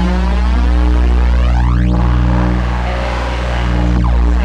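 Heavy, bass-driven drone music: a loud, steady low drone with sustained tones layered above it. A sweeping, flanger-like whoosh narrows to a point about two seconds in.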